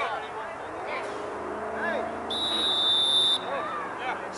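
A sports whistle, most likely the referee's, blown once for about a second as one steady shrill tone, over scattered shouting from players and people on the sideline.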